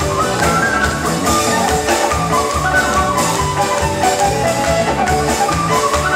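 Live Celtic folk band playing an instrumental passage of a ballad, piano accordion among the instruments: a quick melody line over a steady bass and drum beat, with no singing.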